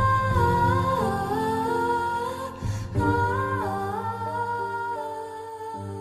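Slow song: a woman's wordless voice humming a melody in long held notes that glide from one pitch to the next, over low sustained accompaniment. There is a short break about halfway, and it gets gradually quieter in the second half.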